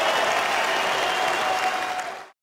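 Arena crowd applauding steadily, a dense even clapping.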